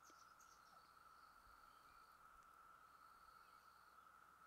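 Near silence: faint outdoor background with a faint, steady insect-like trill that breaks off for about a second past the halfway point.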